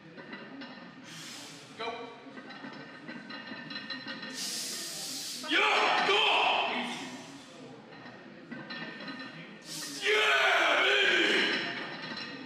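A powerlifter straining through two reps of a heavy barbell back squat: a sharp breath, then a loud strained grunt about halfway through, and again near the end, with faint gym music underneath.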